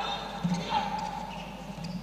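Sounds of live play on an indoor handball court: a few knocks of the ball bouncing and being caught, with brief squeaks and calls from the players.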